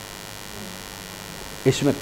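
Steady low electrical hum with faint hiss, as room tone in a pause in speech; a man's voice starts briefly near the end.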